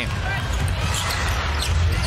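Basketball arena game sound: steady crowd noise over the thud of a basketball being dribbled up a hardwood court.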